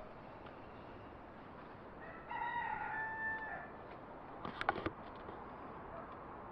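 A rooster crowing once, faintly: a single crow of about a second and a half that drops in pitch at the end. About a second later comes a brief cluster of sharp clicks.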